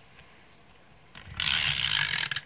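A Stampin' Up! Snail adhesive tape runner being drawn across the back of a cardstock panel, laying down a strip of adhesive. One stroke of about a second, starting a little past halfway.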